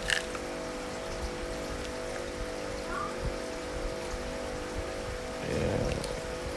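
Light rustling and small clicks of a cardboard box, paper leaflet and plastic pill bottle being handled, with a sharp click at the start, over a steady held background tone.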